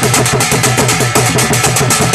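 Loud, fast drum-led niiko dance music, with quick even drum strokes about ten a second over a steady low note.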